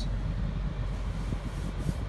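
Steady low hum inside the cabin of a parked 2013 Lexus RX 350 with its 3.5-litre V6 idling, with a little faint rubbing partway through.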